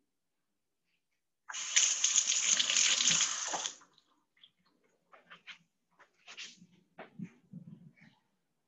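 A steady rush of noise, like running water, starts abruptly about a second and a half in and stops about two seconds later, followed by faint scattered clicks and rustles.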